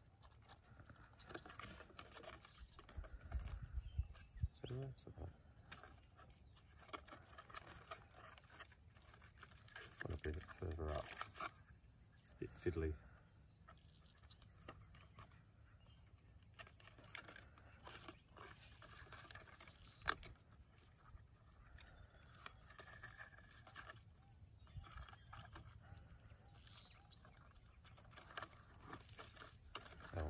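Faint close handling sounds of string and a small cardboard box being tied onto the branches of a young tree, with a few brief muttered words and a single sharp click about twenty seconds in.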